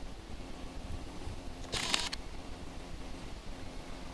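Low wind rumble on the microphone, with one short, sharp noise about two seconds in.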